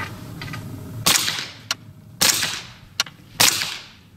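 Three suppressed shots from a V-AR 9mm locked-breech semi-automatic rifle firing subsonic ammunition, a little over a second apart, each with a short ringing tail.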